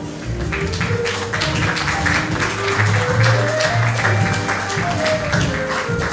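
Live jazz band playing: a flute carries a melody of held notes over piano, upright bass and a drum kit with steady cymbal strokes.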